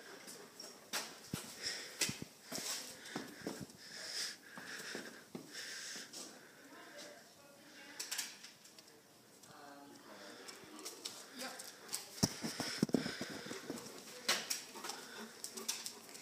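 A dog panting, with scattered faint clicks and knocks throughout.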